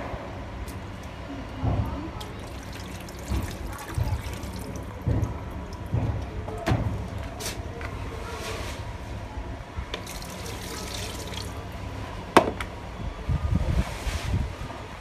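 Water poured and splashed from a small plastic jug over a plastic ride-on toy car, with scattered low knocks of plastic being handled. Near the end comes one sharp click, the loudest sound.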